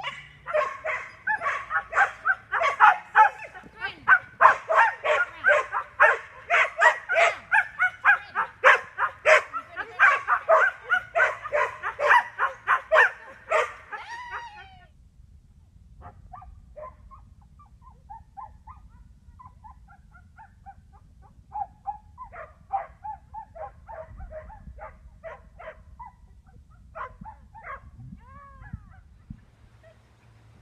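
A border collie barking rapidly and over and over, about three barks a second, for the first half; after a short pause the barks come again fainter and more scattered, with a quick burst in the later part.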